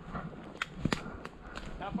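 Footsteps crunching through dry leaf litter and brush, with a few sharp twig snaps in the middle.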